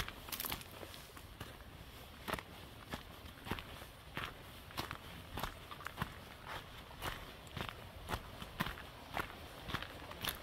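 Footsteps of a hiker walking steadily on a forest trail, a little under two steps a second.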